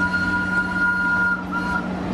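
Steam locomotive's whistle blowing one long, steady two-note blast, with a short break about one and a half seconds in, cutting off near the end, over a low steady hum from the approaching train.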